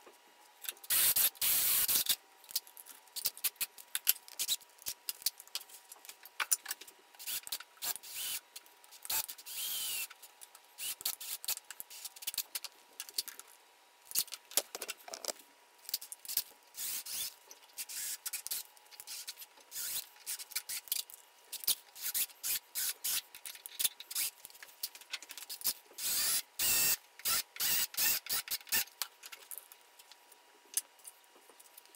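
Hand-tool handling at a wooden workbench: many short clicks and scrapes as drill bits, tools and a steel saw plate are picked up and set down, with a few louder rasping, scraping strokes about a second in and again near the end.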